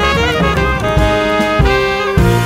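Jazz quintet of trumpet, tenor saxophone, piano, double bass and drums playing Middle Eastern-flavoured jazz. The horns carry a melody of held notes that changes pitch over the band, with sharp drum hits at the start and near the end.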